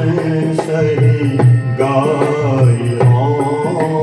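A devotional song sung to harmonium accompaniment, with a two-headed barrel drum (dholak) keeping a steady beat under the sustained reed tones.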